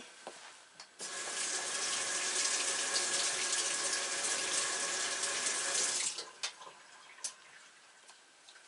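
Water running while a paintbrush is rinsed out, a steady rush that starts about a second in and stops about six seconds in.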